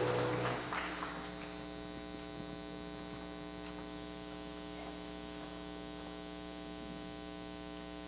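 The last sung note dies away in the first second, leaving a steady electrical mains hum, a buzz with many even overtones.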